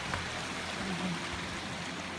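Spring-fed mountain stream flowing over rocks, a steady rush of water.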